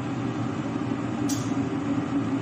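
A steady mechanical hum with a low droning tone, running evenly throughout.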